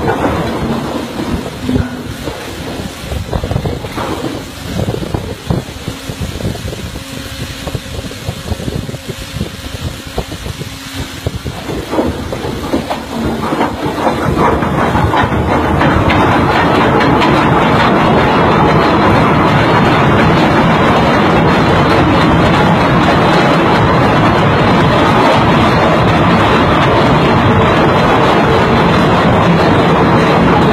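Heavy anchor chain paying out over a ship's windlass, its links clanking irregularly. About halfway through it speeds up into a continuous loud rattle as the chain runs away out of control.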